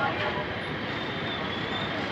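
Steady street background noise: an even hiss and rumble with no distinct events.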